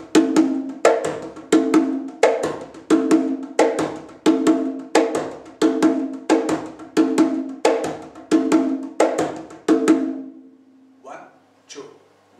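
Single conga drum played with bare hands in a samba pattern: open tones that ring, with a deeper bass stroke on the second beat, the main strokes coming about every two-thirds of a second. The rhythm stops about ten seconds in, followed by a few soft taps.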